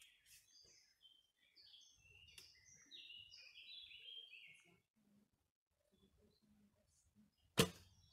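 Small birds chirping for the first few seconds, then, near the end, a single loud sharp crack as a wooden recurve bow is shot, the string slapping forward on release.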